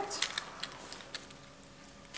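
A few light clicks and crackles of dried leaves and moss being handled and pressed in an autumn flower arrangement, mostly in the first second, then softer.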